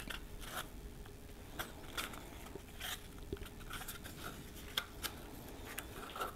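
Faint crinkling and rustling as the cardboard tube of a refrigerated biscuit can is peeled apart by hand and the dough biscuits are pulled out, in scattered short crinkles and clicks.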